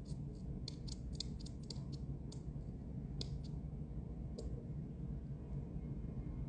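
A run of small, sharp clicks: a quick cluster of about ten in the first two seconds, then a few more spaced out, the last about four and a half seconds in, over a low steady hum.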